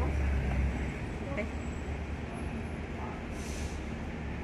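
Street traffic: a steady low engine rumble, strongest in the first second and then easing off, with a short hiss near the end.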